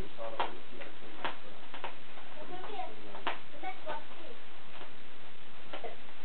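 Bubble wrap on a package being handled and cut open: a series of sharp, irregular clicks and pops, about a dozen over six seconds.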